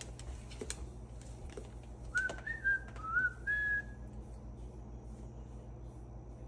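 A short run of whistled notes about two seconds in, stepping up and down in pitch and lasting under two seconds.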